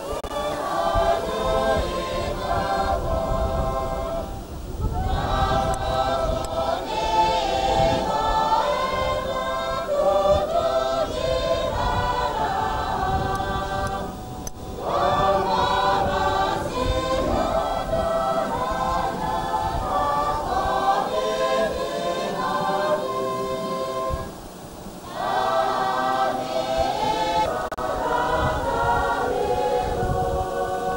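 A church choir singing, in phrases broken by short pauses about every ten seconds.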